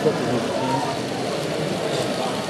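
Indistinct crowd chatter filling an exhibition hall: many voices talking at once, steady throughout.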